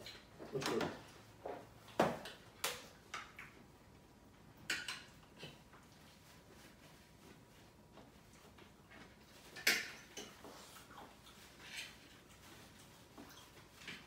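Scattered clinks and knocks of cutlery, plates and cups being handled at a dinner table while people eat. The sharpest knocks come about two seconds in and again near ten seconds.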